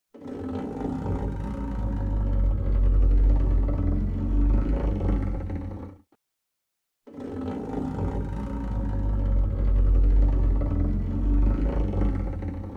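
Deep, rumbling monster roar sound effect, about six seconds long, swelling and then fading, played twice in a row with a second's silence between.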